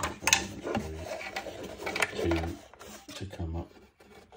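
Fingers handling a 3D-printed plastic charging station and its USB insert: a few sharp plastic clicks and taps, about two of them clear, with short fragments of a man's voice between them.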